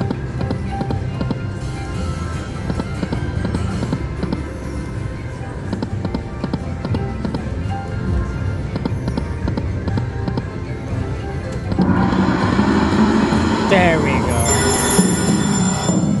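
Dancing Drums slot machine playing its reel-spin music and effects over casino background noise. About twelve seconds in the machine's sounds swell, with a falling tone sweep and then bright chiming as the reels land on a bonus trigger.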